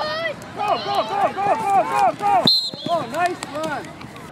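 Spectators shouting excitedly during a flag football play: a rapid run of high-pitched yells, several a second. The sound briefly cuts out about two and a half seconds in, then the yelling resumes.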